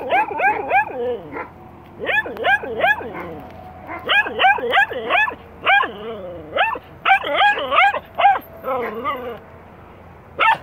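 Small dog barking in quick runs of high-pitched barks, several a second, with short pauses between the runs.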